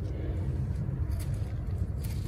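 A steady low rumble with no clear events, such as wind on the microphone or distant traffic makes outdoors.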